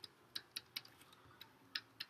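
Stylus tapping and clicking against a tablet surface while writing by hand: about six faint, sharp clicks at an irregular pace.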